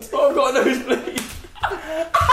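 Voices talking and chuckling, with one sharp smack about a second in.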